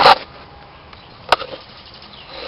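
Two sharp knocks from hands handling car coolant hoses and fittings: a loud one right at the start and a shorter, sharper click just over a second in.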